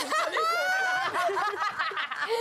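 A woman laughing hard and high-pitched, with one long held high note about half a second in, and a man laughing along.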